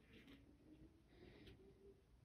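Near silence: room tone with a few faint, indistinct sounds.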